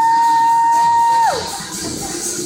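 A spectator's long, high held shout over entrance music. It swoops up into one steady note, holds it for about a second and a half, then drops off.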